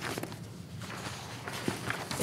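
Sheets of paper being handled and leafed through, with a few light taps and clicks.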